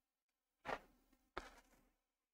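Near silence of room tone, broken by two faint, short noises: one about two-thirds of a second in and a weaker one about half a second later.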